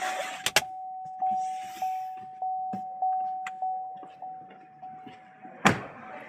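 A 2013 Cadillac XTS's interior warning chime dings steadily, about one and a half times a second, and fades toward the end. Rustling and a sharp click come about half a second in, and a loud thump comes just before the end.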